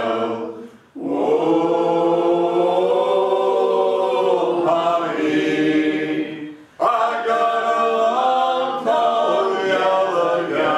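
Unaccompanied group singing of a fishermen's work song, several voices together on long held lines. The singing breaks off briefly about a second in and again near seven seconds, then picks up the next phrase.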